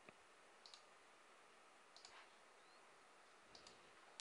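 Near silence with a few faint, sharp computer-mouse clicks spread out, as a line is drawn on a chart.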